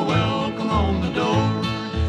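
Bluegrass gospel music: acoustic guitar and banjo playing steadily, with voices singing in harmony.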